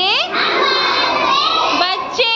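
A group of young children's voices calling out together in chorus, high-pitched and rising and falling.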